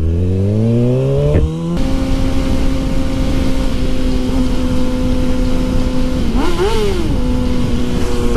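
Sport motorcycle engine accelerating, its pitch climbing, with a brief dip about a second and a half in. It then switches abruptly to a steady cruising note over wind noise. Shortly before the end the pitch rises and falls once in a quick throttle blip.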